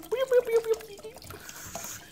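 A brief drawn-out vocal sound from a man, then a faint trickle of Red Bull pouring from a can into a pot of water near the end.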